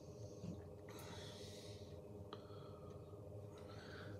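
Quiet room tone with a faint steady hum. A soft breath is heard about a second in, and a faint click a little after two seconds.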